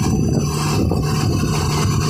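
A heavy diesel engine running steadily, a low, even drone.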